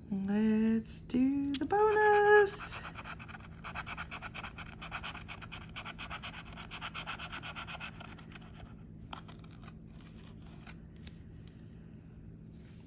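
A black bottle-opener-shaped scratching tool scraping the coating off a lottery scratch-off ticket in rapid back-and-forth strokes for about five seconds, then a few light scrapes, as the bonus spots are uncovered.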